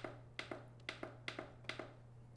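Fingertip pressing the time-down button on a Ninja Speedi's control panel four times: faint, evenly spaced taps, each heard as a press and a release.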